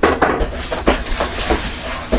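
Cardboard shipping box being handled and tipped on a tabletop: irregular scraping and rustling with several sharp knocks and taps.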